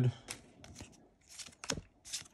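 Pokémon trading cards being handled: a string of short, faint ticks and scrapes as the cards slide and flick against one another in the hand.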